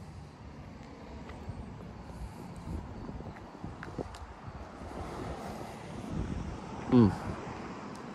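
Low, steady outdoor rumble with a few faint clicks, and a short voiced sound near the end.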